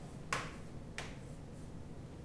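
Chalk on a chalkboard while drawing: two sharp clicks of the chalk striking the board, one about a third of a second in and another about a second in, the first trailing into a short scrape.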